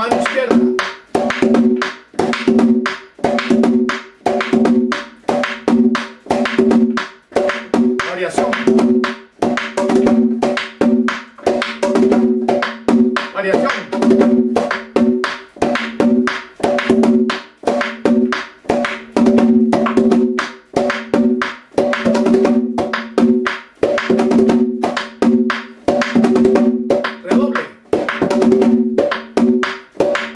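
Dominican tambora played in a steady merengue pattern: two stick strokes on the rim and an open stroke on the fourth beat, with the bare left hand slapping the other head (the galleta or quemado). The bar repeats evenly.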